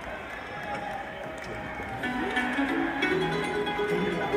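Live arena sound: crowd noise at first, then about halfway through a bluegrass string band of acoustic guitar, mandolin and fiddle starts the song's intro, with held notes stepping in pitch.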